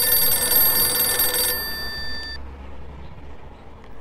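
Mobile phone ringtone: a steady electronic chord of several high tones that cuts off suddenly about one and a half seconds in, followed by a fainter tail lasting about another second.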